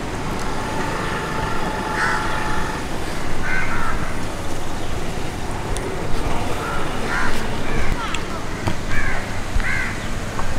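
Crows cawing several times, a few seconds apart, over a steady rumble of road traffic, with a held tone in the first few seconds.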